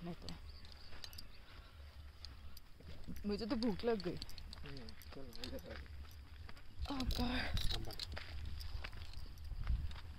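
Voices talking quietly in short phrases over a steady low rumble of wind on the microphone, with scattered small clicks from the camera being handled.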